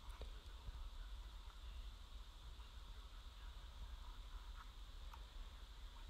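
Faint room hum with a few soft ticks as a mechanical pencil and a plastic lid are handled on a painted denim jacket.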